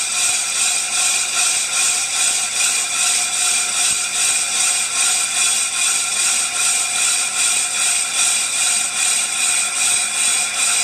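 Ammco brake lathe turning a brake drum while the cutting bit machines its braking surface: a steady, high-pitched metallic ringing that pulses about twice a second.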